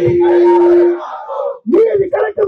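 Protest slogan-shouting in Tamil: one long held shout into a microphone for about a second, then a crowd of voices shouting back. A new shouted call starts near the end.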